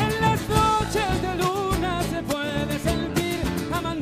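Live band playing an Argentine folk song: strummed acoustic guitars, electric bass and drums, with a male singing voice over them.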